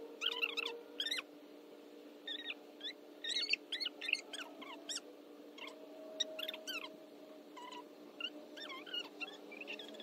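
Background voices sounding like chipmunks: high-pitched chattering in short bursts throughout, over a steady low hum.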